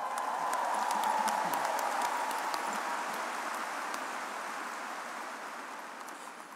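A large audience applauding, swelling in the first second and slowly dying away.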